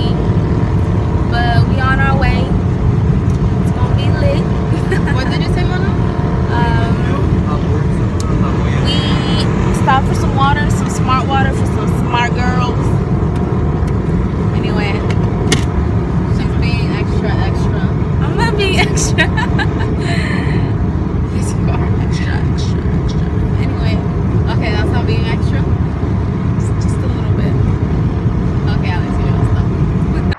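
Steady road and engine noise inside the cabin of a moving car, a constant low rumble.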